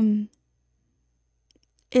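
A held sung note cuts off abruptly as the song's playback is paused. Near silence follows with a couple of faint mouse clicks, then a woman begins talking at the very end.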